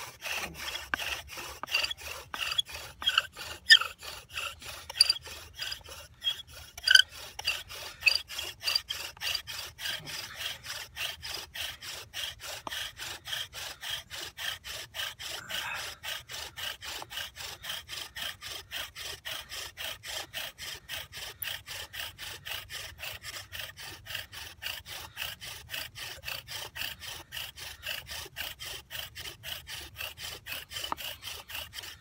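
Bow drill friction fire: a yucca spindle grinding back and forth in a yucca hearth board, a rhythmic rubbing at about three strokes a second, with a few sharp squeaks in the first several seconds. The drilling is grinding out the hot wood dust that should build into an ember.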